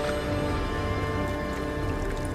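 Heavy rain falling steadily, with held tones of background music underneath.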